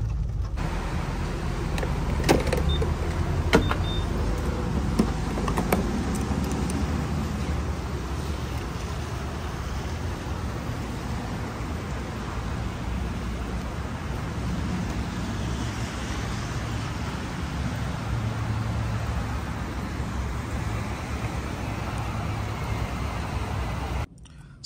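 Steady rushing hiss of gasoline being pumped through a gas-pump nozzle into a car's fuel tank, with rain around it and a few sharp clicks in the first several seconds.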